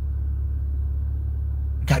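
Steady low rumble of a car, heard from inside the cabin, with no change in pitch or level; a man's voice starts just before the end.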